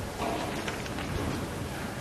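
Steady hiss-like room noise in a church, with faint scattered rustling from a standing congregation.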